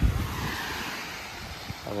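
Small waves washing onto a sandy beach, a steady hiss of surf, with wind buffeting the microphone as a low rumble at the start.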